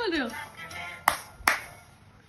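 Two sharp hand claps about half a second apart, after a voice that falls in pitch at the start.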